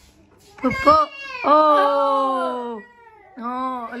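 A person's voice: a short rising cry, then a long drawn-out call that slowly falls in pitch, and a brief exclamation near the end.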